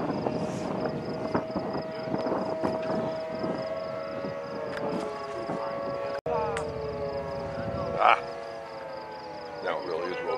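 Outdoor tornado warning siren sounding, a steady wail that slowly sinks in pitch from about halfway through. A short loud burst of noise cuts in near the end.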